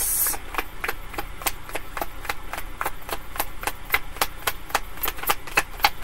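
A deck of tarot cards being shuffled by hand: a run of quick, irregular clicks and slaps of cards against each other, several a second.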